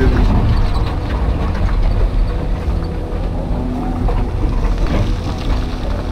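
Excavator diesel engine running steadily under hydraulic load while the boom and bucket work soil and rock, heard from inside the operator's cab.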